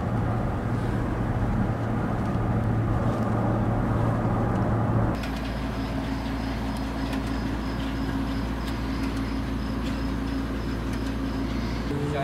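Steady drone of car engine and road noise heard from inside the cabin while driving. About five seconds in it cuts abruptly to a steadier, quieter engine hum with a faint high whine as the car sits at a fuel pump.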